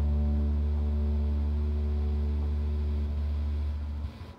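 A band's final chord on electric guitars, bass guitar and keyboard held and ringing out, with a deep bass note underneath, slowly fading and dying away at the end.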